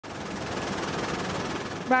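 Steady rushing helicopter noise heard from inside the cabin. A voice starts right at the end.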